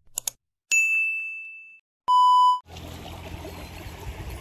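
Subscribe-button sound effects: a couple of quick mouse clicks, then a bright bell-like ding that rings out for about a second, then a short steady beep. About two-thirds of the way in it cuts to a steady outdoor background hiss.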